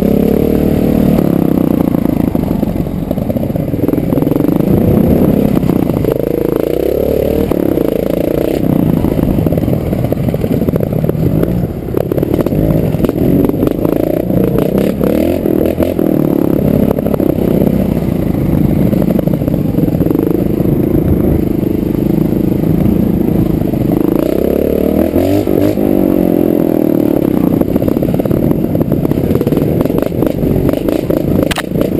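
Trial motorcycle engine running at low revs, heard up close from on board, the revs rising and falling continually as the bike picks its way up a rocky trail. Clatter and knocks from the bike working over the rocks run through it.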